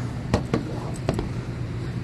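Three light knocks as a handheld battery pressure washer is handled and set down on a solar panel, over a steady low hum.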